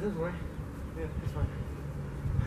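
A steady low buzz, with a faint voice at the very start.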